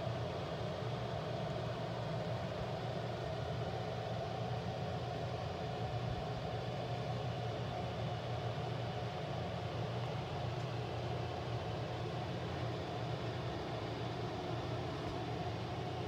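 A steady low mechanical hum with a fainter higher tone held over it, unchanging and without breaks.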